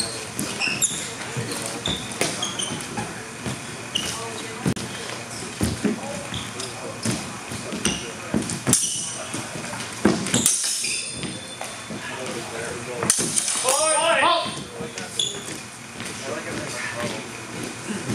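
Training longswords clashing in a sparring bout: several sharp strikes with a brief high metallic ring, the loudest about nine, ten and a half and thirteen seconds in.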